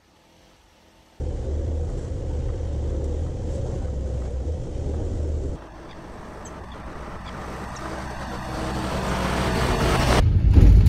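Ford Transit van driving along a gravel road: engine running and tyres rolling over the gravel, a heavy low rumble. It cuts in suddenly about a second in, drops sharply about halfway, then builds steadily as the van comes closer and passes.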